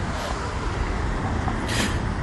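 Steady outdoor street background, a low rumble like road traffic, with a short hiss near the end.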